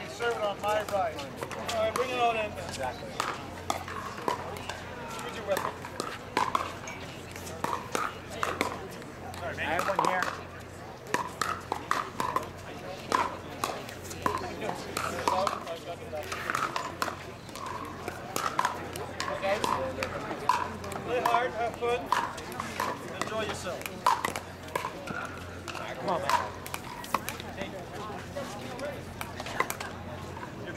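Background voices of players and spectators talking, with frequent short, sharp pops of pickleball paddles striking hard plastic balls scattered throughout, over a low steady hum.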